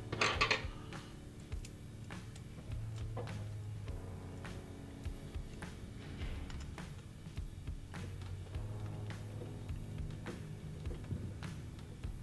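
Soft background music with scattered small metallic clicks and taps as a screw is threaded back into a rifle ballhead's clamp with a T-handle hex key.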